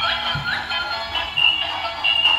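Battery-powered toy bubble gun playing its electronic jingle, a tune of short high notes: a super annoying racket, while the gun fails to blow any bubbles.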